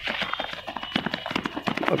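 Many running footsteps on concrete: a dense, uneven run of quick footfalls from a group sprinting.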